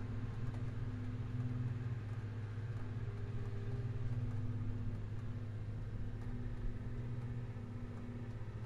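An engine running steadily at idle, a low even hum, a little softer near the end.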